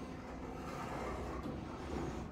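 Steady low rumble with a light hiss: background room noise, with no distinct event standing out.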